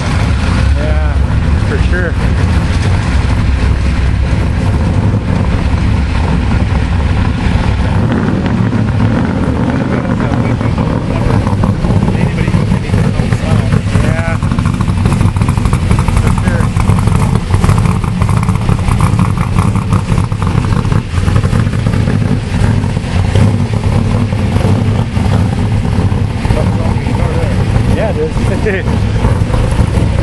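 Show trucks' engines running with a steady, loud low exhaust rumble, changing in character about eight seconds in, with people talking in the background.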